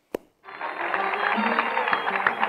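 A short click, then the crackle and hiss of an old radio broadcast recording fade in about half a second in, thin and muffled, with many small pops.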